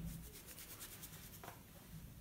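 Faint rubbing and light scratching of hands working at something small, with a soft knock about a second and a half in.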